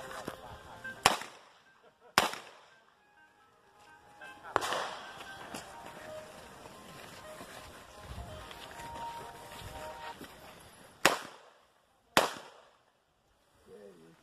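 Pistol shots fired in an IPSC handgun stage: four sharp, loud shots in two pairs about a second apart, one pair near the start and one near the end. A fainter crack comes between them, about four and a half seconds in.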